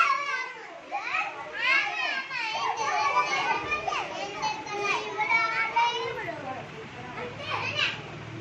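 Young children's voices chattering and calling out, high-pitched and sometimes several at once.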